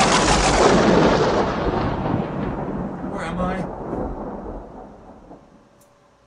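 Thunder sound effect: a loud rumble that starts abruptly and dies away steadily over about five seconds.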